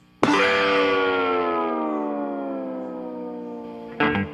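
A cartoon cow's long, drawn-out moo that starts abruptly and slides slowly down in pitch as it fades away over nearly four seconds.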